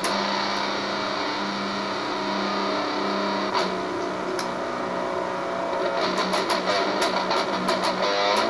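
Electric guitar, an Eastwood Sidejack played through a Boss MT-2 Metal Zone distortion pedal into a Vox AC15 amp: long held notes, then fast picked notes from about six seconds in.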